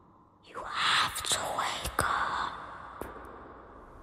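A person whispering loudly and breathily for about two seconds, starting about half a second in, with a few sharp clicks near the end.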